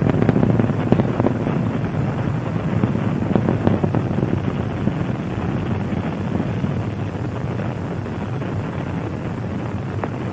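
Space Shuttle Discovery's solid rocket boosters and main engines during ascent: a steady, low, noisy rumble with some crackle early on, slowly getting quieter.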